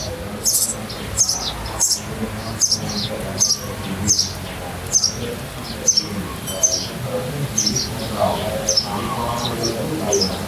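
A small bird chirping repeatedly: short high chirps, a little more than one a second, in a steady series.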